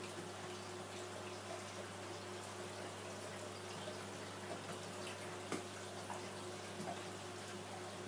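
Marine aquarium filtration system running: water trickling through the sump under a steady low hum from its pumps, with a few faint ticks.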